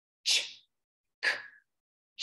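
A woman's voice making two short, unvoiced speech sounds, the phonics sounds /ch/ and then /k/, the first two of the three sounds of the phonogram ch.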